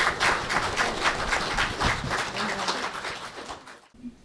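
Congregation applauding, a dense patter of hand claps that gradually thins and fades, then cuts off abruptly near the end.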